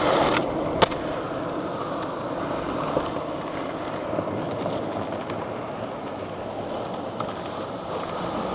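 Skateboard wheels rolling steadily over asphalt, with a sharp clack of the board about a second in and a couple of lighter clicks a few seconds later.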